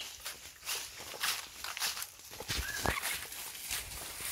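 Footsteps crunching on dry leaf litter along a forest trail, a steady walking rhythm. About three seconds in there is a brief high chirp.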